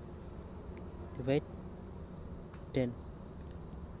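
A faint insect trill, a high note pulsing evenly and rapidly, over a steady low background hum. A man says two short words.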